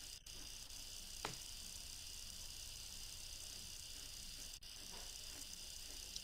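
Faint steady hiss with a low hum beneath it, broken by one soft click about a second in.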